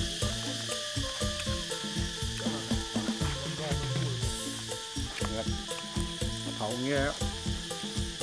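Wood fire hissing and crackling as buffalo hide roasts in the embers, with background music of held notes underneath.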